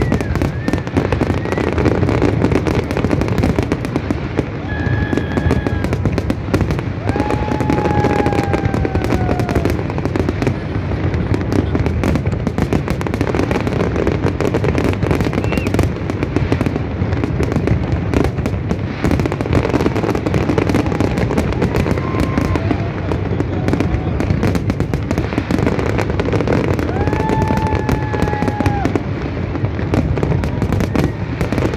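Large aerial fireworks display: shells bursting in a dense, unbroken barrage of bangs and crackling, with no let-up.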